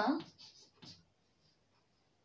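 Chalk scratching on a blackboard in a few short strokes as letters are written, just after a woman's spoken word trails off at the start.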